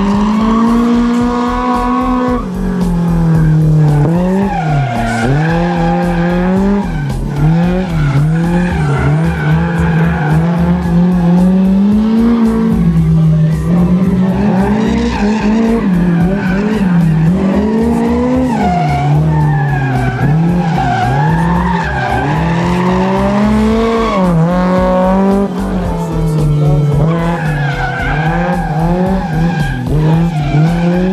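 Tuned, naturally aspirated Honda S2000 inline-four with a JS Racing-built engine, revving hard. Its pitch climbs and drops over and over with throttle and gear changes as the car is driven flat out and drifted, with tyre squeal.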